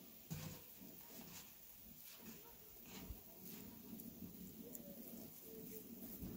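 Quiet squishing and small clicks of ground buffalo meat being pressed by hand into a ball around cheese, with faint wavering whining in the background.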